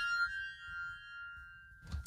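The tail of a high synthesizer note ringing out and fading away over about a second and a half. It is the synth's own decay with the reverb send switched off, not a reverb or effect.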